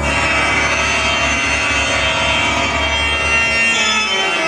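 Loud show music with many held notes, over the deep roar of large pyrotechnic flame jets; the low rumble dies away near the end.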